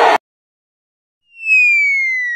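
A crowd cheering cuts off abruptly just after the start. After about a second of silence, a whistle comes in: one clear tone that starts high and glides slowly downward.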